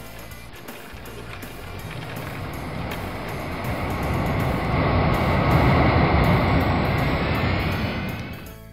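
Sound effect of a jet airliner taking off: engine noise with a faint high whine that grows steadily louder, peaks about five to six seconds in, then fades near the end.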